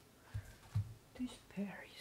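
Soft, near-whispered speech, with two soft low thumps in the first second before the words begin.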